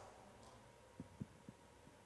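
Near silence: room tone, with three faint low thumps in the middle.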